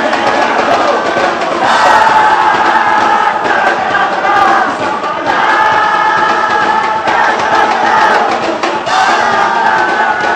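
Live concert audio: a crowd chanting loudly in unison, in held phrases a few seconds long, over the band's music.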